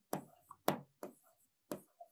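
Stylus tapping and clicking on the glass of an interactive touchscreen board while writing, about five or six short, sharp taps at uneven intervals.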